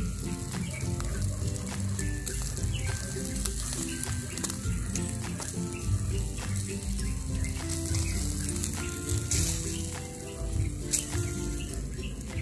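Pork belly sizzling on a charcoal grill, with a steady hiss and small crackles, under background music with a melody.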